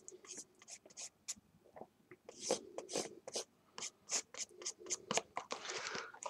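Felt-tip marker drawing on a cardboard box, a run of short, faint strokes, while the box is handled and turned in the hand.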